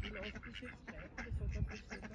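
Ducks quacking intermittently as they crowd in to be fed, with a brief low rumble about midway.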